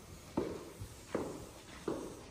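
Footsteps of a person in shoe covers walking on a hard floor at the foot of a staircase: three even steps about three-quarters of a second apart.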